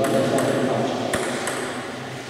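Celluloid-style table tennis ball bouncing a few times, sharp light clicks, as the server readies to serve.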